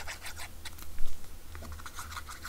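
Tip of a liquid glue bottle scratching and dabbing across the back of a cardstock oval, with paper handling: many small ticks and light scrapes, one slightly louder about a second in.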